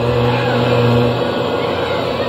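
A man's voice over a loudspeaker holding a long, steady chanted 'O' of a mantra. It stops about a second in, and a rough background hubbub is left.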